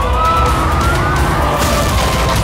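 Several sirens wailing together, their pitches gliding up and wavering as they overlap, over a heavy low rumble of dramatic background music.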